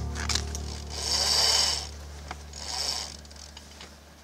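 Yacht winch ratcheting in two short bursts as a line is hauled in, about a second in and again near three seconds, while background music fades out.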